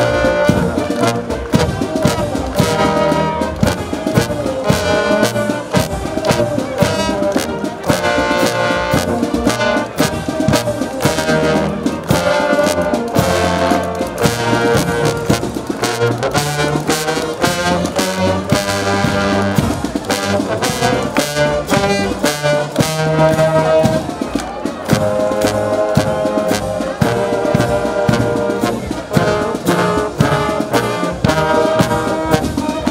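Marching brass band of cornets, trombones, euphoniums and tubas playing a march as it moves along.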